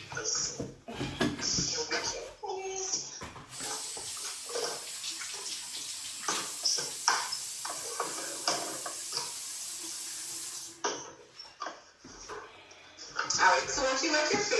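A bathroom sink tap running for about seven seconds as water is splashed onto a face to wet it before cleansing, then shut off.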